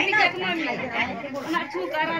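Chatter of a seated group of women talking over one another, with several voices overlapping and none standing out clearly.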